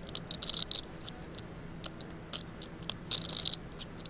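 Poker chips clicking as a player handles them at the table, in two short flurries, about half a second in and again about three seconds in, with a few single ticks between over a low steady hum.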